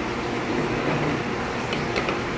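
Steady hum and air noise of running room equipment, with a couple of faint clicks near the end as plastic fittings and the plastic container are handled.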